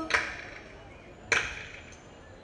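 Thiruvathirakali dancers clapping their hands in unison: two sharp claps a little over a second apart, each ringing briefly.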